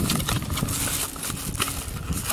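Thin plastic shopping bag rustling and crinkling as a small cardboard box is handled inside it, with irregular crackles throughout.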